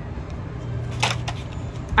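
Light handling noise of plastic blister-pack packaging, with a couple of short clicks about a second in.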